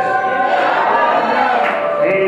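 Worship singing: voices carry a slow melody with long held notes.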